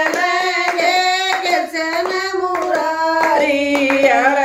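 Women singing a devotional bhajan together in one melody line, clapping their hands in a steady rhythm.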